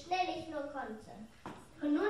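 Children's voices speaking, with a short pause in the middle.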